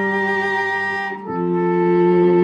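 Chamber trio of soprano saxophone, cello and piano playing sustained held notes. The harmony moves to a new chord a little over a second in.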